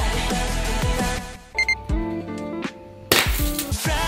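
Background pop music with a beat breaks off about a second in, giving way to two short high pings and a held low tone. Near the end a sudden loud bang of party poppers goes off, and the music comes back in.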